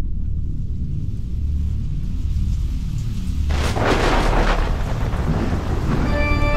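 Atmospheric opening of a power metal track: a deep, pulsing low rumble, with a loud thunder-like crash about three and a half seconds in that fades over about two seconds.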